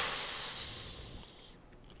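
A hiss with a thin high whistling tone in it, fading away over about a second and a half.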